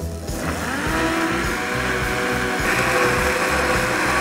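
Countertop blender running, blending hard apricots and raspberries with a little water. The motor's pitch rises over the first second as it spins up, then holds steady.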